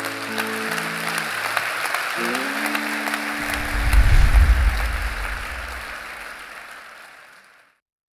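Audience applauding over held guitar chords, the guitar being the cue that the talk's time is up; the pitch slides about two seconds in. A deep boom comes in about three and a half seconds in, and everything fades out near the end.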